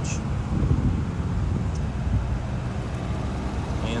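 A steady low mechanical hum and rumble with no distinct events.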